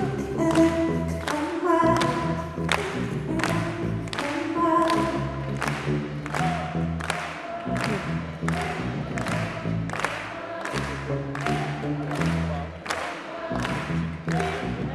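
Live West African band music: singing voices over guitar, bass notes and a steady percussion beat of about two strikes a second.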